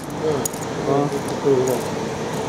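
Indistinct talking voices, with a few faint clicks.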